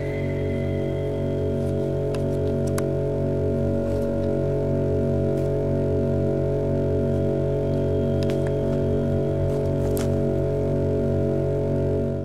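One deep, long, vibrating drone that holds the same low pitch throughout, a hum with several steady overtones whose source is unexplained. A few faint clicks sound over it.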